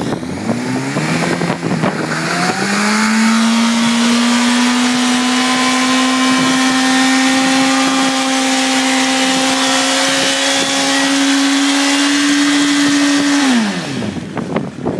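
Honda CBR1000 sportbike's inline-four engine revving up over the first couple of seconds, then held at high revs for about ten seconds while the rear tyre spins in a burnout, its pitch creeping slightly higher. The revs drop off sharply near the end.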